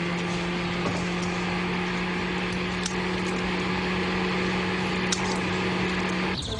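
Truck engine and road noise heard from inside the moving cab: a steady, even hum with a constant rushing noise and a few light clicks and rattles.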